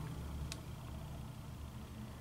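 Quiet room tone with a steady low hum and one faint click about half a second in.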